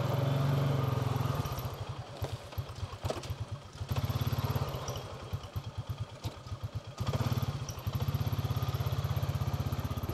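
Honda Foreman Rubicon 500 four-wheeler's single-cylinder engine running at low speed while being worked on and off the throttle. It drops to a slow putter of separate firing pulses about a second and a half in, picks up briefly near four seconds, and comes back on steadily at about seven seconds.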